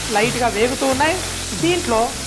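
Mutton pieces frying in mustard oil in an open pan, a steady sizzle, under a louder wavering pitched sound that rises and falls.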